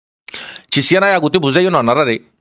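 A man speaking in Rohingya into a handheld microphone, starting about a third of a second in after a brief silence.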